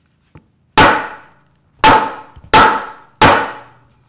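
Claw hammer striking a pine board four times in quick succession, each blow ringing briefly. The blows drive the heads of sheetrock nails lying beneath the board into its underside, so their impressions transfer the drawn lines onto the wood.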